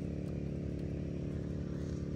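Small engine running steadily at a constant speed, an even drone with no change in pitch.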